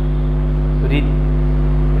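A loud, steady low hum, held on several pitches at once, running unbroken under a man's voice that says a single word about a second in.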